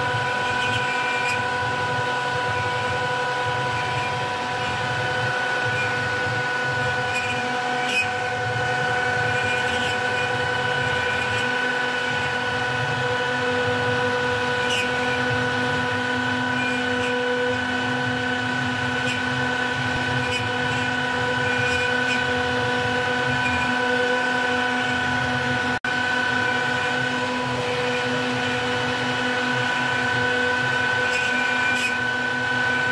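CNC router spindle running at a steady pitch, a whine of several steady tones, as it mills a wooden blank turning on the rotary axis, over a low rumble of the cut; a second lower tone joins about halfway through.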